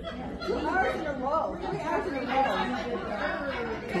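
Indistinct chatter: several voices talking, away from the microphone, in a large indoor hall.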